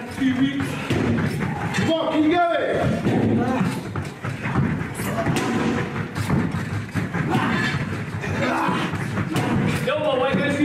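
Indistinct voices shouting during a boxing workout, with repeated thuds of hits or landings.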